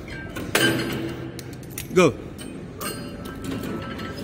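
A sharp metallic clank from a gym exercise machine about half a second in, ringing briefly, with a fainter knock near three seconds. A man's voice calls out a single word in between.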